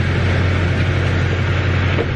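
Diesel pickup truck engine idling with a steady low hum and clatter, left running while the truck is being refuelled.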